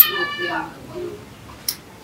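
A drawn-out high-pitched call, falling slowly in pitch, that ends about half a second in, followed by faint voices.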